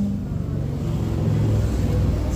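A live band's bass holding low, steady notes under a soft instrumental backing, with no singing.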